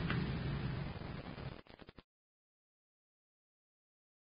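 Faint, steady rushing noise of the recording's background, fading over about a second and a half and breaking up, then dead silence for the rest: a gap in the recording.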